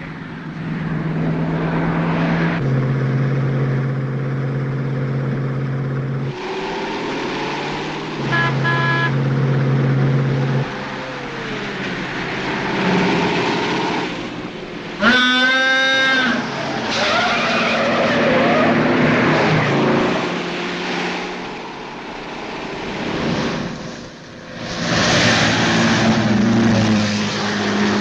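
Car driven fast along a winding road, its engine running hard with tyre squeals. A loud, wavering squeal stands out about fifteen seconds in.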